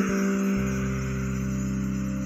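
Electric bass guitar played with the fingers, letting a chord ring out and slowly fade. A low note comes in about half a second in and holds steady under it.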